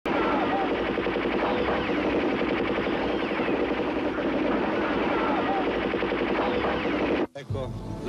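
Sustained rapid automatic gunfire, dense and unbroken, with voices mixed in. It stops abruptly about seven seconds in, and a man's voice begins talking.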